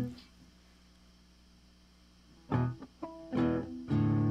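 Guitar: a chord at the start, about two seconds of near quiet, then a few single notes and chords from about two and a half seconds in, ending on a held chord as a blues song begins.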